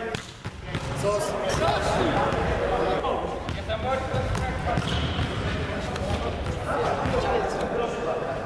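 Echoing sports-hall sound: indistinct voices of young players with repeated irregular thumps on the floor, like balls bouncing or feet landing.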